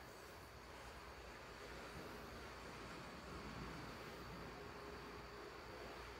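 Very quiet room tone: a faint steady hiss with no distinct sounds; the batter pouring into the pan is not clearly heard.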